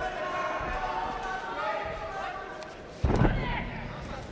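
Spectators and corners shouting, then about three seconds in a loud thud as a fighter's body is slammed down onto the ring canvas in a takedown.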